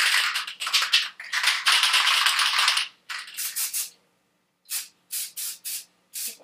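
Aerosol spray-paint can being shaken, its mixing ball rattling for about three seconds, then after a pause several short bursts of spray near the end.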